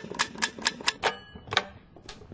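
Surveyor's measuring wheel rolling along a hard hallway floor, its counter clicking off the distance in a quick, even run of sharp clicks, about four a second.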